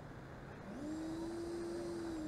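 Whine of electric ducted-fan RC jets in flight. The pitch is low at first, rises about two-thirds of a second in as the throttle comes up, and then holds steady.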